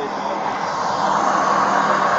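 Steady vehicle noise at a roadside traffic stop: an even rushing hiss over a low, steady engine hum, growing slightly louder.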